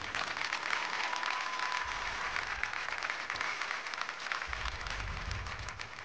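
Studio audience applauding, a dense patter of many hands clapping that thins and fades near the end.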